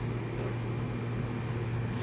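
Steady low machine hum with a faint hiss.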